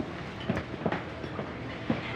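Footsteps of shoes on a hard floor, a few separate clacks over a steady low background hum.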